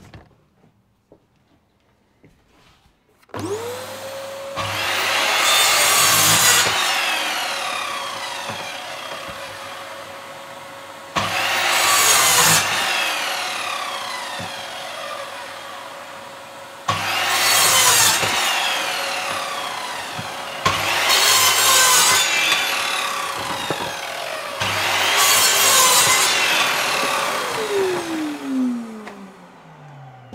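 A sliding mitre saw cutting scrap wood, with a vacuum hooked to its dust port. A motor spins up about three seconds in and runs steadily. Five loud cuts through the wood follow, each starting sharply and fading, and a motor winds down near the end.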